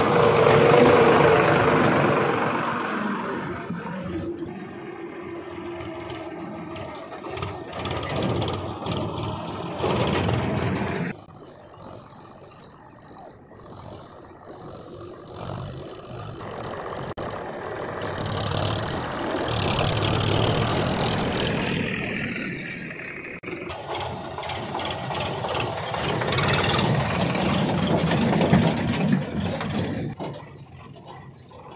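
Sonalika farm tractor's diesel engine pulling a trolley, driving close over the ground and away, loudest about a second in and then fading. The engine sound drops suddenly about eleven seconds in, then grows and fades again twice.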